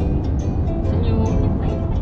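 Steady low rumble of road and engine noise inside a moving car's cabin, with music and faint voices over it.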